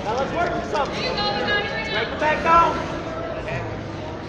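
Spectators' voices shouting indistinctly in a gymnasium, loudest about two and a half seconds in.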